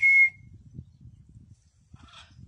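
A loud recall whistle from a person: one short note that rises, then holds steady for about half a second, calling the parrot in to a raised fist. After it there is only a faint low rumble.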